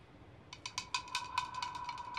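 Faint percussive sound effect under a silent reaction shot: a quick, irregular run of light ticks over a thin held high tone, starting about half a second in.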